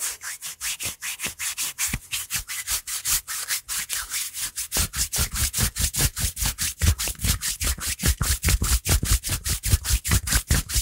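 Hands rubbing along bare forearms close to a microphone: a quick, even run of skin-on-skin strokes, several a second. About halfway through, the strokes take on a deeper, fuller sound.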